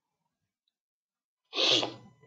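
A single short, sudden sneeze from a person about one and a half seconds in, after near silence.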